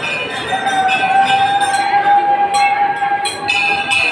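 A long, steady horn-like note, held level for about three and a half seconds over the murmur of a crowd.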